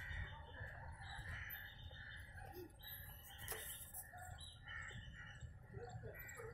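Faint, scattered bird calls over a steady low background rumble.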